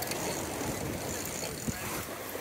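Steady rush of wind and water aboard a sailboat under way, with wind buffeting the microphone and a brief knock near the end.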